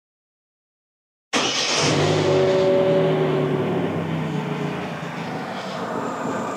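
Vauxhall Corsa's Ecotec engine starting about a second in and settling into a steady idle, easing off slightly as it runs, on its first start after fresh oil and a refitted exhaust.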